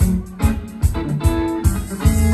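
Live band playing without vocals: electric guitar and keyboard over a steady drum beat, hits landing about every 0.4 seconds.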